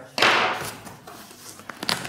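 Hands handling a cardboard box: a short scraping rush that fades, then a few light taps and one sharp click near the end.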